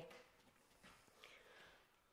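Near silence, with a few faint footsteps on bare wooden floorboards, about a second in and again shortly after.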